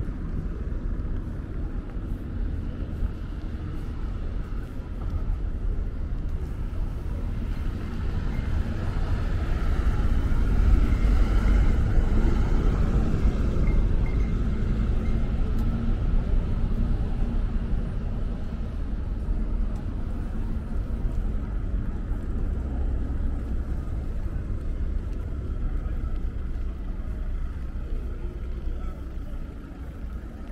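Low street traffic rumble, swelling as a vehicle passes about ten to fourteen seconds in, then settling back.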